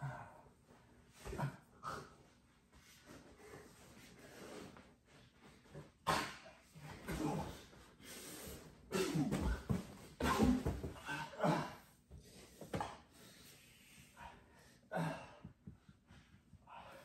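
Two men wrestling on a carpeted floor: heavy breathing, snorts and grunts of exertion, with scuffling, coming in irregular bursts, loudest around the middle.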